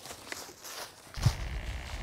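Quiet footsteps and rustling through dry fallen leaves and grass, with a few soft clicks. A low rumble joins about a second in.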